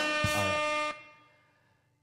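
A horn-like sound effect: one steady, bright blaring tone that holds level, then cuts off about a second in and fades away.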